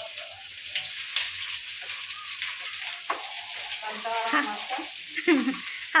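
Sliced onions frying in hot oil in a kadhai on a gas stove, a steady sizzle throughout.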